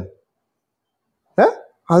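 A voice in an online voice-chat room trails off, then the line drops to dead silence for about a second. A short rising vocal sound comes near the end, just before the talk picks up again.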